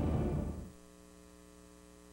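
The end of a TV promo's soundtrack fades out, leaving a faint, steady electrical mains hum with a stack of even overtones in a blank gap on an old videotape recording.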